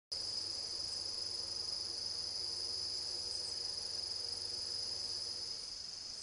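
Steady, high-pitched chorus of crickets, an unbroken continuous trill.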